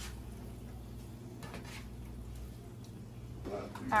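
A spatula scraping and stirring faintly in a frying pan of sausage and melting cream cheese, over a steady low hum. A few soft scrapes come through in the middle, and a woman's voice starts near the end.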